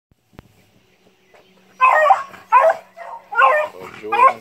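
Dog barking three sharp, high-pitched times, giving voice on a rabbit it has found.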